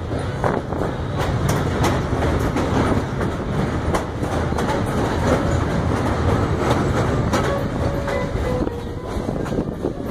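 Passenger train running over a steel truss bridge: a steady rumble of wheels on rails, with frequent clicks and clacks.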